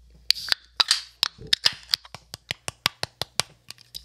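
A rapid, irregular series of about twenty sharp clicks and snaps close to the microphone, with a short hiss near the start, as drink cans are handled and opened.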